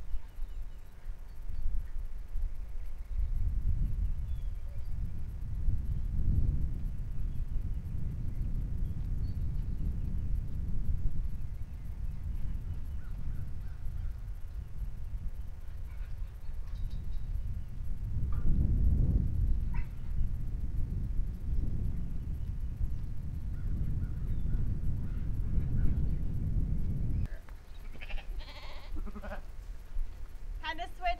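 Gusty low rumble of wind on the microphone, rising and falling, which drops away suddenly near the end, with a few faint livestock calls.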